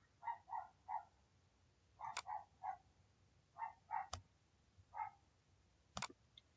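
A dog barking faintly in short yaps, in quick runs of three or four with pauses between, and a couple of sharp computer-mouse clicks among them.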